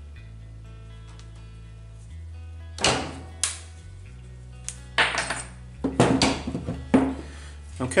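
Bolt cutters snipping through a 1/8-inch stainless steel welding rod, with sharp metallic clicks and clinks as the rod and the cutters are handled and set down on a wooden bench. There is one loud click about three seconds in, then a run of clinks in the last three seconds, over background music.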